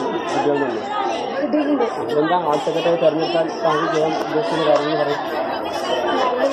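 Many voices talking over one another: the steady overlapping chatter of a group of people, with no one voice standing out.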